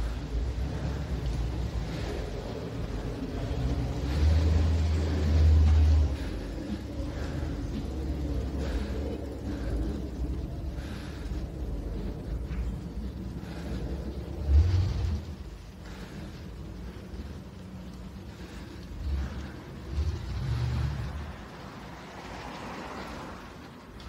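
Street traffic ambience: a steady low rumble of passing vehicles, swelling louder a few times, around four seconds in, near the middle and about twenty seconds in.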